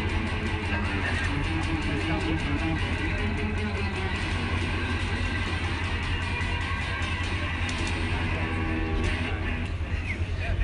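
A homemade sword-shaped guitar played through an amplifier: a steady, rhythmic run of plucked and strummed notes over a strong low drone.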